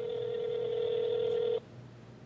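Telephone ringback tone on an outgoing call: the far line is ringing and has not yet been answered. One steady ring that cuts off about one and a half seconds in, heard over the phone line.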